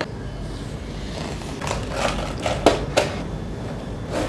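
Handling noise in a wooden drawer: a few light knocks and clicks with some rustling as pouches and boxes are shifted into place, the sharpest knock about two and a half seconds in, over a low steady hum.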